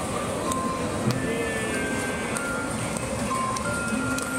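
Coin-operated kiddie ride playing a simple electronic jingle, one held note after another, over steady background noise.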